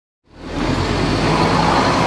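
Road traffic with a vehicle passing, fading in after a moment of silence and holding steady.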